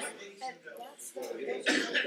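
A man coughing lightly, then his low voice starting a little past a second in.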